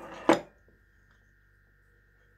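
Two short, loud mouth sounds from a woman eating by hand, one right at the start and one about a third of a second later. After them there is only a faint, steady high-pitched whine.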